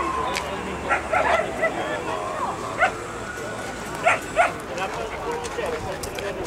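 A dog yapping in short, sharp barks, five in all, with the loudest pair close together about four seconds in, over crowd chatter. At the start a siren's falling wail fades away.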